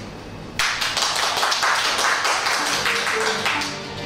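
Audience applauding, a dense patter of many hands clapping that starts about half a second in and dies down near the end.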